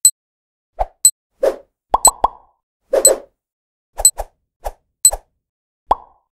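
Countdown sound effects: a string of short pops and clicks, about one or two a second, some with a thin high ping, with silence between them.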